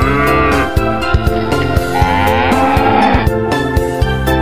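A cow mooing twice, a long moo at the start and another about two seconds in, over background music with a steady beat.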